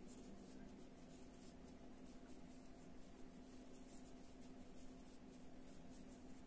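Near silence: faint, repeated scratching of cotton yarn being worked with a metal crochet hook, over a low steady hum.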